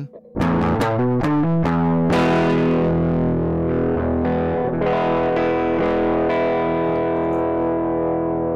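Heritage H-150 single-cut electric guitar played through the Driver distortion module in Reaktor Blocks. It opens with a quick run of single picked notes, then a chord is struck about two seconds in and left ringing while more notes are played over it.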